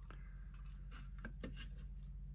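Quiet handling noise: a few soft taps and rustles as a metal-framed model wing section is moved about on the paper pages of a magazine, over a faint steady low hum.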